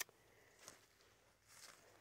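Near silence: faint outdoor room tone, with one brief sharp click right at the start and a couple of faint soft sounds later.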